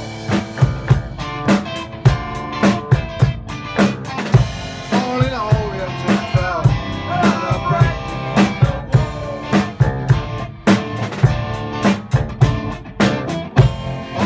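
Live rock band playing: electric guitar and electric bass over a drum kit keeping a steady beat.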